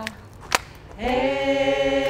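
A small group of voices singing an improvised a cappella circle song, holding steady chords in several parts. The singing breaks off at the start, with a single sharp click in the short gap, then resumes about a second in with a held chord.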